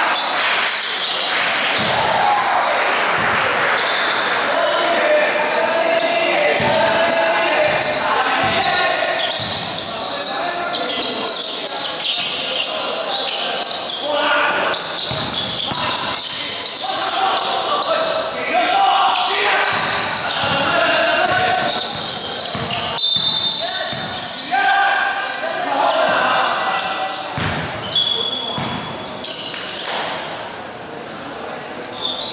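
Indoor basketball game: a basketball bouncing on the court amid steady overlapping voices of players and spectators calling out, echoing in a large gym hall.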